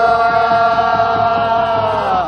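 Men's voices singing a Korean folk work song of the rice paddy, chanted while weeding the rice by hand, here one long held note at a steady pitch.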